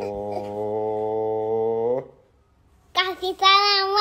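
A low, steady hum held for about two seconds, then cut off. After a short silence, a young child's high voice comes in near the end, drawn out and rising and falling in pitch.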